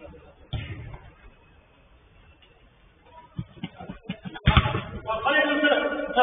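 Thuds of a football being kicked on a five-a-side pitch: a sharp one about half a second in, a few lighter knocks later, and the loudest near the end. Players' voices call out right after it.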